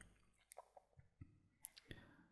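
Near silence broken by a few faint computer-mouse clicks, the clearest one shortly before the end.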